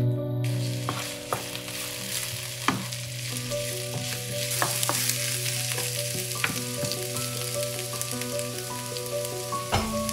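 Food sizzling in oil in a frying pan. The sizzle starts about half a second in, with scattered clicks of a utensil stirring and a sharper knock near the end.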